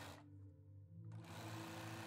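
Bernina B 570 Quilters Edition computerized sewing machine stitching through fabric. It runs briefly at the start, pauses for under a second, then runs again steadily from just over a second in.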